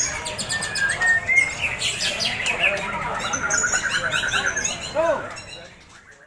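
Several white-rumped shamas (murai batu) singing in a song contest: a dense mix of quick whistles, chirps and a repeated trill, with people's voices under them. The sound fades out near the end.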